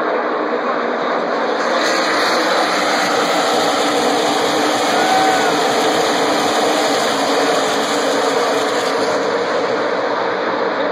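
A pack of NASCAR Sprint Cup V8 stock cars racing past at speed: dense, continuous engine noise that swells about two seconds in and eases off near the end.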